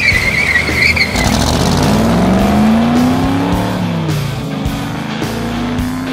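Car tyres squealing briefly, then the car's engine revving as it accelerates: its pitch rises, dips around the middle, and rises again near the end.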